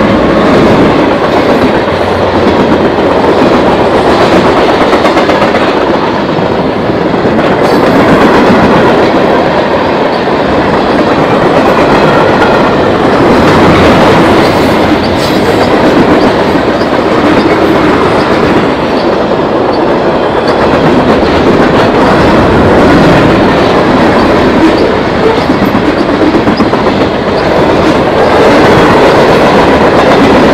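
Mixed freight train of tank cars and boxcars passing close at about 49 mph: steel wheels on the rails make a loud, steady rumble and clickety-clack over the rail joints.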